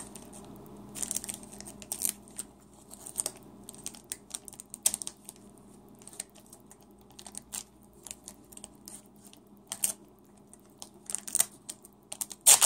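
Scattered soft crinkles and clicks from handling trading-card pack wrappers and cards, coming irregularly with small gaps between.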